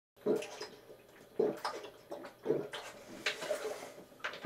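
A man gulping water from a large plastic bottle: three swallows about a second apart, then a softer sound near the end as he stops drinking.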